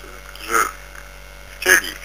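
A steady electrical mains hum runs under two short bursts of a man's voice, one about half a second in and a louder one near the end.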